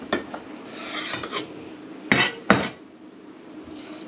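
A knife scraping and knocking against a ceramic plate as it cuts through a pile of cooked spaghetti, with two sharp knocks a little after halfway.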